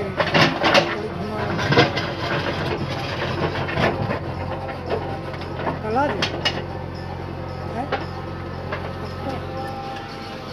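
A JCB 3DX backhoe loader's diesel engine runs steadily under load as the backhoe digs and loads soil. Occasional sharp knocks come from the bucket and the dirt.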